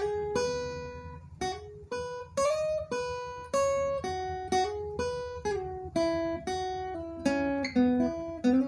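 Cort acoustic guitar played with a pick: a single-note melody of about a dozen plucked notes, each ringing and fading, with some notes slid or hammered on to a higher fret without a new pluck.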